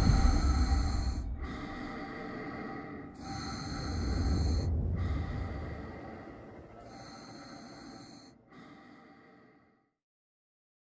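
An astronaut breathing inside a spacesuit helmet: about six slow breaths in and out, each about a second and a half long, growing fainter until they stop shortly before the end. A low rumble sits under the first half and dies away.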